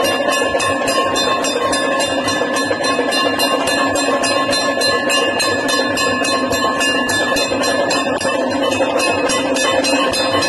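Temple aarti bells ringing in a fast, even rhythm of about seven strokes a second, with a steady metallic ring held underneath.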